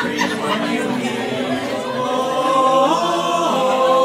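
Mixed-voice a cappella choir singing long held notes, stepping up in pitch about three seconds in.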